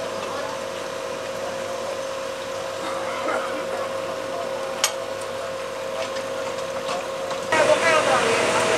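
A parked fire engine's engine and pump running with a steady hum, under faint voices of firefighters talking, with a sharp click about five seconds in. The hum gets louder near the end.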